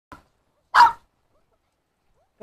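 A dog barks once, a single short, loud bark about three-quarters of a second in, with a faint brief sound just before it.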